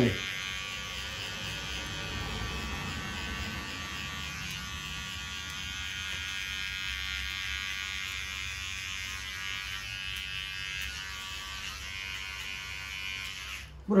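Electric hair clipper buzzing steadily as it is run up the nape, taking the neckline down to the skin. The hum stops near the end.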